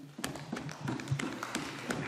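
Quick, irregular sharp taps, many to the second, at a modest level.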